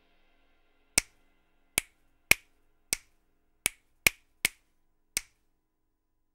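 A single sampled percussion hit from the EZdrummer 2 software drum instrument, played eight times one at a time at uneven intervals, as when one drum sound is auditioned by hand. Each hit is short, sharp and dry, with little low end.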